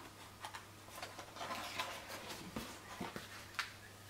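Large card-paged lift-the-flap book being handled and a page turned: faint scattered ticks and paper taps, the sharpest near the end.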